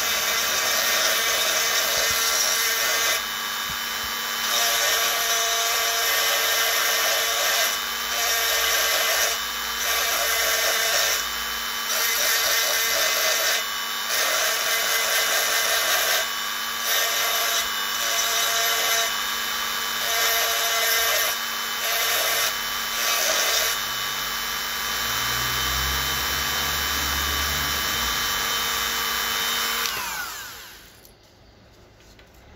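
Rotary tool on a flexible shaft running with a steady high whine, its bit grinding into a coconut shell in short gritty passes of a second or two each. The cutting stops about 24 seconds in, leaving the motor running on its own until it winds down at the very end.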